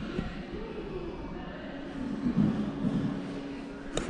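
Indoor background noise with faint, indistinct voices in the distance and a steady low hum that starts about a second and a half in.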